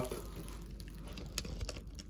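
Faint rustling and small clicks of bubble wrap and cardboard being handled as a wrapped model is lifted out of a box and set down.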